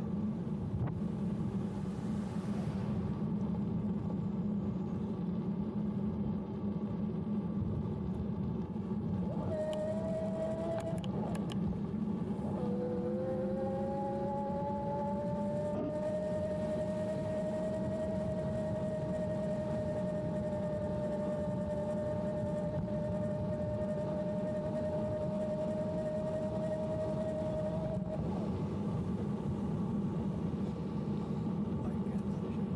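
CYC Photon mid-drive e-bike motor whining under power: a brief whine about a third of the way in, then a whine that rises in pitch, levels off and holds steady before cutting out near the end. Steady wind and tyre rumble runs underneath throughout.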